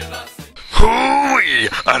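Music fading out in the first half second, then a cartoon character's voice in a long, drawn-out cry that slides down in pitch and back up.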